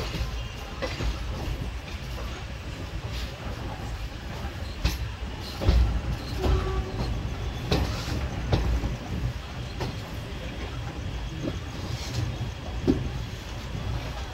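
Indian Railways passenger coaches of the Puri–Jodhpur Superfast Express running on the track, heard from on board: a steady low rumble with irregular clacks and knocks as the wheels cross rail joints and points, the loudest knock about six seconds in.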